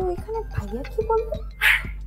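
A woman's voice in short expressive bursts that ends in a laugh near the end, over a quiet music bed.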